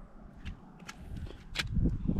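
Footsteps of a person walking on dirt and concrete: three short, crisp ticks over a faint outdoor background.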